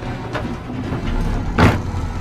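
A low, steady rumble with a few faint knocks, then one sharp thump about one and a half seconds in.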